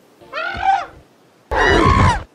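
A giant ape creature's vocal calls: a short pitched call a quarter second in, then a louder, longer one from about a second and a half in, the start of a word subtitled "Ba..".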